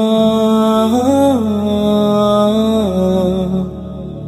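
Wordless sung notes from a nasheed: a long held vocal tone over a low drone, rising briefly about a second in and stepping down in pitch near the end.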